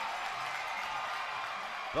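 Hockey arena crowd noise: a steady, even wash of cheering and hubbub from the stands.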